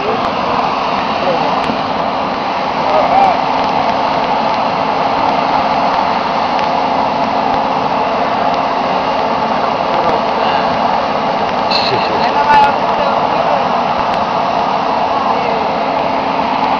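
A steady mechanical drone with a constant low hum runs without letup, under indistinct voices talking in the background.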